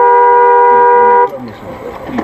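A two-tone car horn sounds one steady blast of about a second and a quarter, then cuts off. It is a warning at a car cutting in close.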